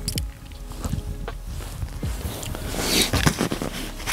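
Soft mouth sounds as a monofilament knot joining the main line to a shock leader is wetted with saliva, which lubricates it before tightening. This is followed by rustling of a waterproof jacket, louder about three seconds in, as the line is drawn tight.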